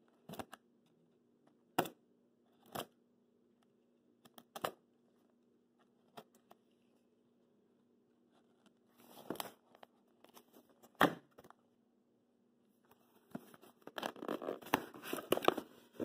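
A knife slitting the packing tape on a cardboard box: a few short separate cuts and scrapes, then a longer noisy cut. Near the end the box flaps are opened and the foam packing peanuts inside rustle in a dense crackle.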